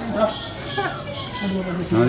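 Background voices: several people talking and calling out at once, children's voices among them.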